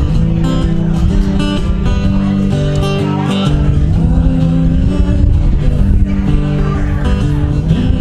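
Acoustic guitar strummed through an instrumental passage of a song.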